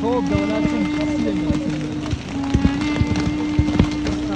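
Voices mixed with music over a steady low droning tone, with sharp knocks now and then.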